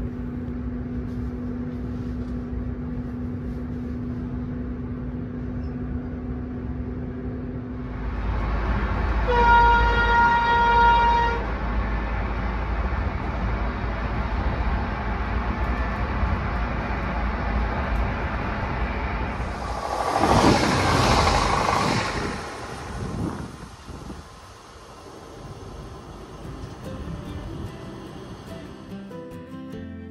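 Inside a Tågab X10 electric multiple unit: a steady hum while it stands, then a deeper rumble as the train gets under way about eight seconds in. Shortly after, a train horn sounds once for about two seconds. Later a loud rushing noise swells for about two seconds, then the running noise settles quieter.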